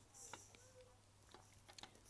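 Near silence, with a low steady hum and a few faint, short clicks, a small cluster of them near the end.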